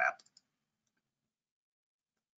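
The end of a man's spoken word, a few faint clicks, then dead silence.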